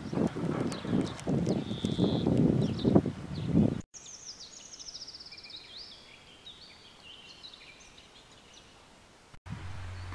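Irregular rustling and knocking for the first few seconds. After a sudden cut comes a faint forest ambience of songbirds singing: a fast trill falling in pitch, then scattered short chirps.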